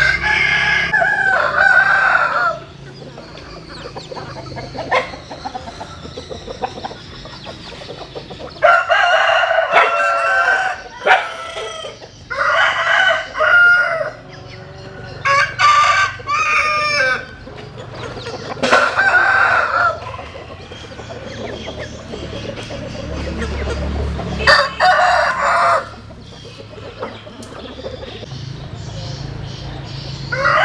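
Roosters crowing again and again, about seven crows spread through the stretch, each a second or two long.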